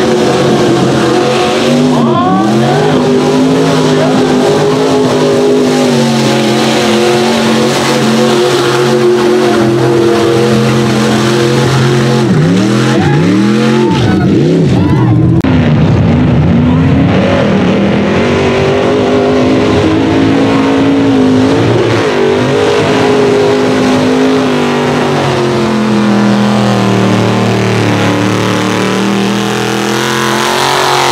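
Mud-bog truck engines running hard at high revs through a mud pit. They rev up and down in sweeps about two seconds in and again around the middle, with steady high-rev running between.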